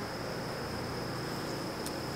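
Honeybees buzzing steadily around an open hive as a comb-filled frame is lifted out, with a faint click near the end.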